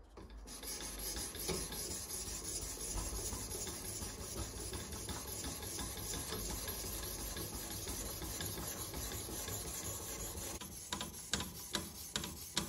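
Abrasive stone on a TSPROF K03 guided-angle sharpener's arm rubbing back and forth along a steel dagger's edge in a steady rasp. Near the end it breaks into separate short strokes, about two a second.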